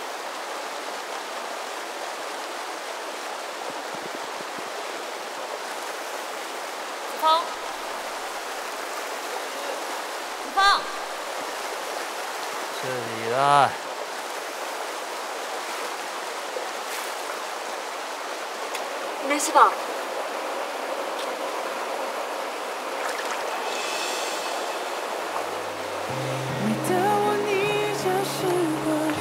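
Shallow stream water running steadily over rocks, broken by a few brief voice sounds: short cries or grunts, one gliding down in pitch. Gentle guitar-led music comes in near the end.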